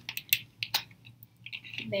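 Plastic screw cap being twisted shut on a water bottle: several small, separate clicks.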